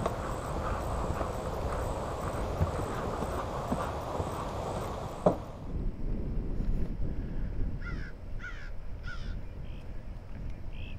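Steady outdoor rushing noise that cuts off abruptly about halfway through, then a bird calling three times in quick succession, harsh calls that fall in pitch, with a fainter call near the end.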